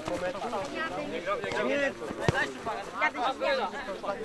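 Men's voices calling and talking across a football pitch, with a single sharp thud a little past halfway.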